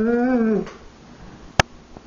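A dog's whining 'talking' call: one drawn-out pitched call that rises a little and falls away, ending about half a second in. A sharp click follows about a second later.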